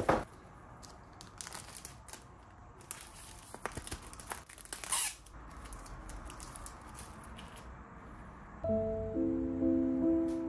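A sharp click at the start, then a sheet of paper rustling and crinkling as it is handled over a picture frame's glass. Soft piano music comes in near the end.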